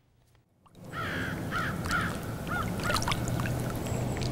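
Outdoor dawn ambience fades in about a second in: birds calling over and over, short repeated calls about twice a second, over a steady hiss.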